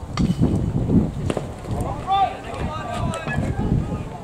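Wind buffeting the microphone. About two seconds in, a voice on the field calls out.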